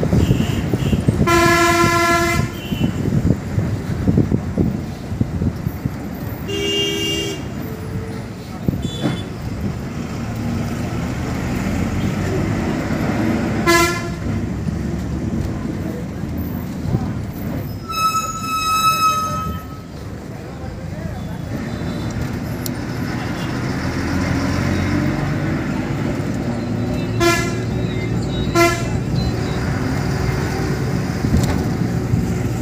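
A bus running with engine and road rumble, heard from inside at an open window, broken by several horn toots. One long toot comes near the start, shorter ones follow a few seconds apart, a higher-pitched one comes in the middle, and two quick toots come near the end.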